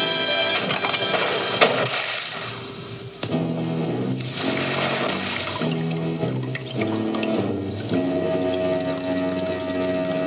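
Cartoon soundtrack: music with water splashing and dripping effects. A sharp hit about a second and a half in, then a melody of stepping notes over the dripping water.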